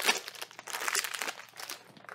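Packaging of a sardine tin crinkling and tearing as it is pulled open by hand, a run of irregular crackles that thins out toward the end.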